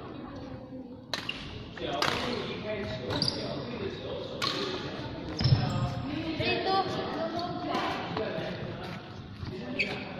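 Badminton rackets striking a shuttlecock in a rally, several sharp smacks about a second apart, echoing in a large sports hall, with a heavier thud about halfway through and background voices throughout.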